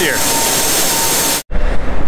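Pneumatic grain vac running, a loud steady rush of air and grain through the intake hose, cut off abruptly about one and a half seconds in, leaving a low steady hum.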